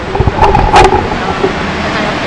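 Steady outdoor street and traffic background noise. About half a second in there is a short pitched sound with sharp knocks.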